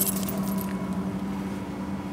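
A steady low hum with a faint constant higher tone, and a brief metallic jingle at the very start.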